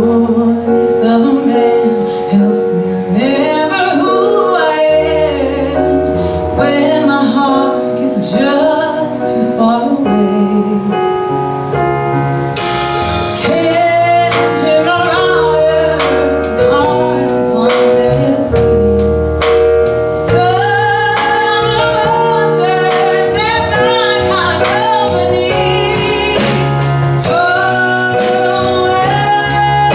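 A woman singing a slow song into a microphone over instrumental accompaniment, her voice holding long notes.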